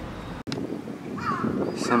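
A crow cawing once, briefly, about a second in, over a steady hiss of outdoor background noise.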